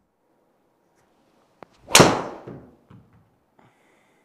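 A driver striking a golf ball: one sharp, loud crack about two seconds in that fades away over about half a second, with a faint tick just before it.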